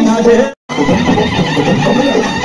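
Amplified singing over loud music from a stage sound system, broken by a short total dropout about half a second in, after which it resumes.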